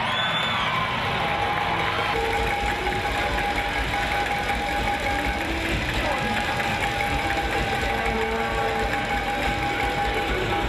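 Arena crowd noise at an indoor soccer game, with a steady rapid rattle from a fan's hand-held noisemaker and a long held tone running through it.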